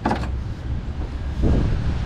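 A classic car door, the driver's door of a 1968 Chevrolet Camaro, being unlatched at its push-button handle and swung open, with one short sound about one and a half seconds in, over a steady low rumble.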